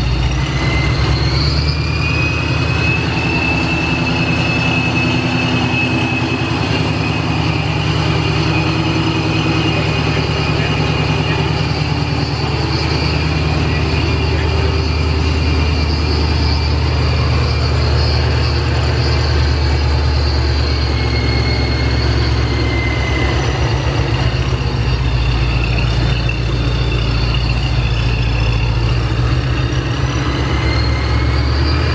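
The 5.0 Coyote V8 of a 2019 Mustang is idling steadily on its newly fitted Vortech V3 centrifugal supercharger, in one of its first runs on the new tune. A thin, high supercharger whine rises slightly about a second in and fades, then comes back briefly later.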